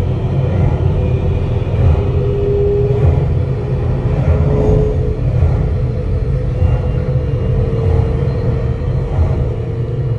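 Simulated space-elevator ascent sound effect from the ride's speakers: a loud, steady low rumble. Faint held tones sit above it, each lasting about a second at slightly different pitches.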